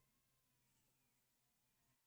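Near silence: faint room tone with a faint, drawn-out pitched sound that glides slowly downward.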